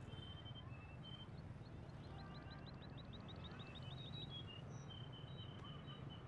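Small birds chirping: scattered short high notes, with a quick run of rapid chirps for about two seconds around the middle, over faint steady outdoor background noise.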